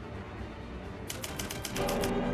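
A quick run of about eight typewriter-style key clicks about a second in, a sound effect for an on-screen caption being typed out. Music with held notes comes in near the end.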